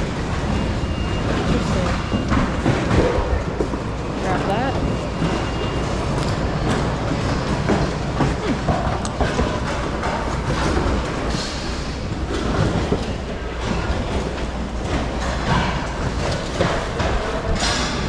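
Bags, purses and other items rustling and knocking as they are handled and moved about in a cardboard bin, over the steady noise of a busy store with people talking in the background.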